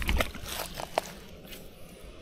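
A small splash on still lake water, then a few light clicks and knocks from handling fishing gear.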